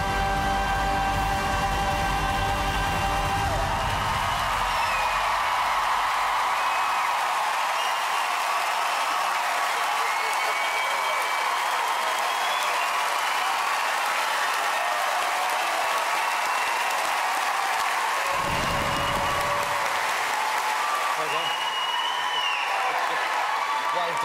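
Large theatre audience applauding and cheering at the end of a live sung performance, with high calls rising and falling over the clapping. The band's final held chord sounds in the first few seconds and ends about four seconds in.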